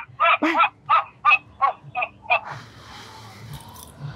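A woman's voice saying "bye-bye", then a quick run of about five short, evenly spaced vocal syllables, followed by faint rustling for the last second or so.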